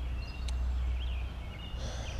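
Small birds chirping faintly in short, scattered calls over a steady low outdoor rumble, with a single click about half a second in.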